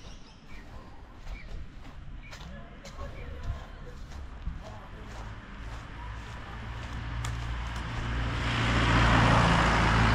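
A motor vehicle driving by on the street, its engine and tyre noise swelling from about six seconds in and loudest near the end.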